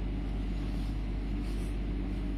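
Steady low hum with an even background noise and no distinct events.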